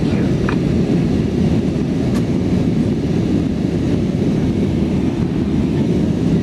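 Steady low roar inside the cabin of an Airbus A320 airliner climbing after takeoff: engine and airflow noise heard from a window seat.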